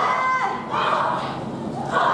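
A high-pitched yell, held and then dropping off about half a second in, followed by the voices of a crowd.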